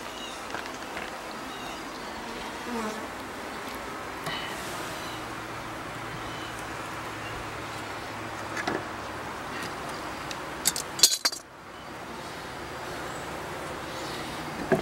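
Honeybees buzzing at an open top bar hive, a steady hum. A few sharp clicks and knocks near the end come from the wooden top bars being slid together, and the sound is briefly muffled just after.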